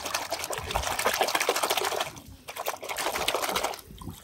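Muddy water in a plastic bucket sloshing and splashing in quick strokes as a plastic toy car is swished and scrubbed under the surface by hand. It comes in two bursts, with a short pause a little after two seconds.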